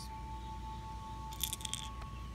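A faint steady high tone, two close pitches held throughout, with a few light metallic clinks about one and a half seconds in, as the metal tongs touch the shells.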